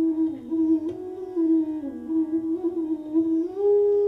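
Bansuri (Indian bamboo flute) playing a slow Hindustani classical melody, sliding between notes, then holding one long steady higher note from about three and a half seconds in, over a steady drone.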